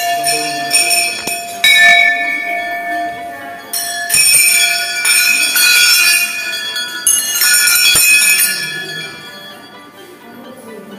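Hanging temple bells rung by hand: three separate clangs, about two, four and seven seconds in, each ringing on and slowly fading, with the ring of an earlier strike still dying away at the start.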